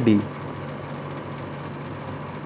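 A steady low hum with hiss, the room's background noise, with no other event.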